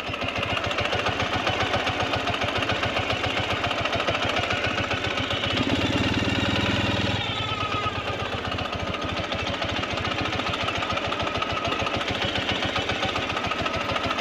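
Motorcycle engine running at low revs with a fast, even pulse, briefly louder about six seconds in.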